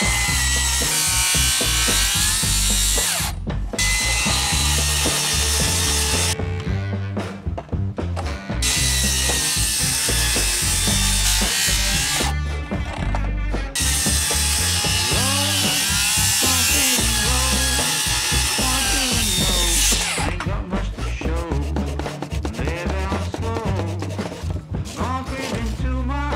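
Circular saw cutting notches into a pressure-treated stair stringer: a series of cuts with short pauses between them, stopping about 20 seconds in. Music plays underneath.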